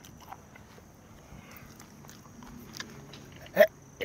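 A person quietly chewing a mouthful of tough, rubbery sea hare fried rice, then one short, sudden throat sound about three and a half seconds in as he starts to gag.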